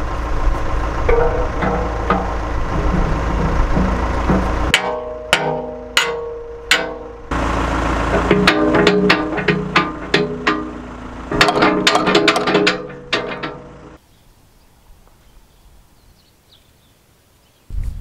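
Irregular sharp steel-on-steel knocks and clanks, many ringing briefly, as pins are worked into a backhoe bucket's mounting ears. A steady low diesel idle from the backhoe runs under parts of it. The sound drops away to quiet for the last few seconds.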